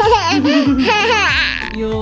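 A toddler laughing and squealing loudly in high, wavering shrieks, over background music.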